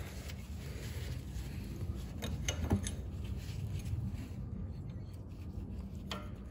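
Faint metal clinks and scrapes of steel combination wrenches being handled and tried on a brake caliper bleed screw, with a few light clicks about two and a half seconds in.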